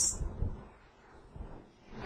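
Pause between spoken sentences: faint, even background hiss, with the tail of the last word fading out in the first half-second.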